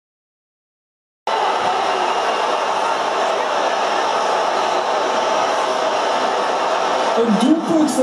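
Dense babble of a large crowd of football fans, many voices talking at once, cutting in suddenly about a second in after silence and then holding steady. Near the end, a single man's voice stands out above the crowd.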